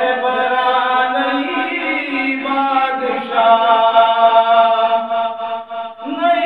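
A man's voice chanting a Kashmiri naat without instruments, drawing out long held notes, with the melody shifting about three seconds in.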